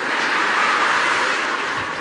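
Audience laughing together in reaction to a punchline, a steady crowd noise that eases off slightly near the end.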